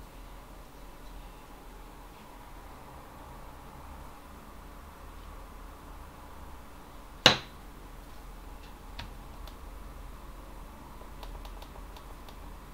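Quiet, steady low hum with one sharp click about seven seconds in and a few faint ticks later on.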